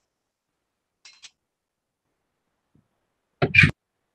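Video-call audio cut to silence, with faint blips about a second in and one short, loud, noisy burst into a participant's microphone near the end, like a sharp breath or sneeze.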